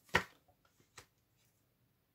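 Tarot cards being handled: a short, sharp card snap just after the start and a fainter click about a second in, with near silence between.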